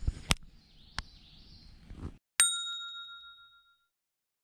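A couple of sharp clicks over faint outdoor sound, which cuts off about two seconds in. Then one bright, bell-like ding sound effect, struck once and ringing out as it fades over about a second and a half.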